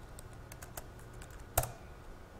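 Laptop keyboard being typed on: a few light key taps, then one sharper, louder keystroke about one and a half seconds in.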